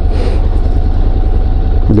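Motorcycle riding slowly in traffic, heard from the rider's seat: a steady, loud low rumble of engine and wind.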